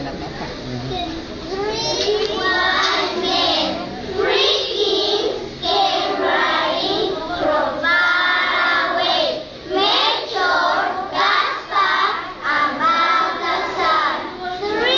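A group of young children singing together in unison, in short phrases with brief pauses for breath; the singing starts about two seconds in.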